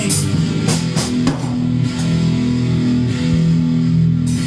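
A rock band playing an instrumental passage: electric guitar chords held over a drum kit, with several sharp drum and cymbal hits in the first second and a half.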